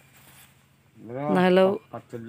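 A man's voice: one drawn-out syllable about halfway through, rising in pitch at its start, after a quiet first second.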